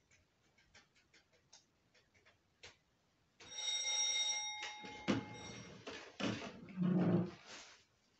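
An electric bell, most likely a doorbell, rings steadily for about a second, preceded by faint ticking. A dog then barks a few times.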